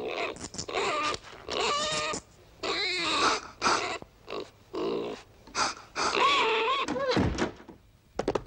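Wordless vocal grunts and snuffles, about ten short bursts with the pitch sliding up and down, made as non-speech sound effects for animated clay body parts.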